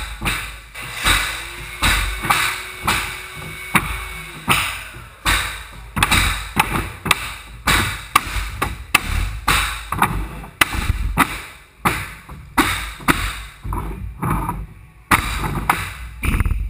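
Mallets striking pneumatic flooring nailers, driving fasteners through unfinished hardwood floorboards. The sharp knocks come about twice a second in an uneven rhythm, from two nailers working at once.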